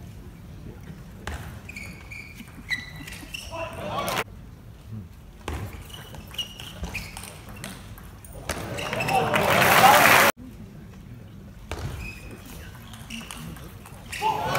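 Table tennis rallies: the ball clicking off paddles and table, with short high squeaks of shoes on the court floor. After a point about eight seconds in, arena crowd applause and cheering swells and then cuts off suddenly.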